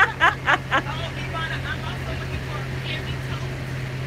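Steady low drone of a bus, heard from inside its cabin, under a burst of women's voices in the first second and faint chatter after.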